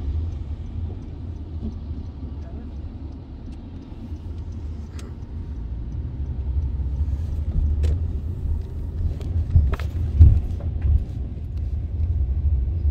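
Low, steady vehicle rumble heard from inside a car cabin as it moves past a fire engine, louder in the second half. A few sharp ticks stand out above it.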